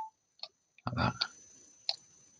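Two short, sharp computer-mouse clicks, one about half a second in and one near the end, over quiet room tone.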